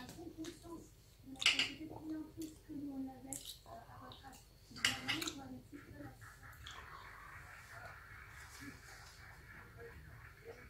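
Knife and fork clinking on a plate as fish is cut, with two sharp clicks about one and a half and five seconds in, over an indistinct murmuring voice.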